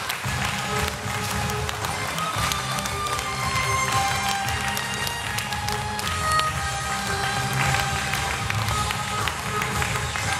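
A violin trio playing a melody of long held notes over an amplified backing track with a steady low bass and beat.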